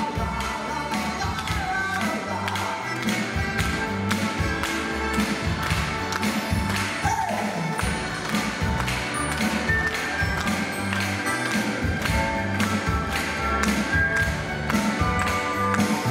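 Instrumental passage of a song played live by an orchestra with a drum kit, over a steady beat.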